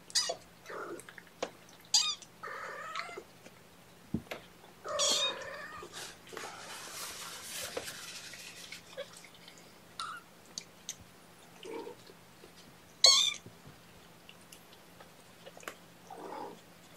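Young kittens, about three and a half weeks old, mewing: several short high-pitched cries, the loudest about thirteen seconds in, with small clicks and soft rustling from a kitten being handled on a towel.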